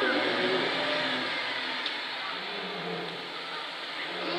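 Engine of a zoo safari bus running as it pulls away, its steady noise easing off a little, with faint voices of onlookers underneath.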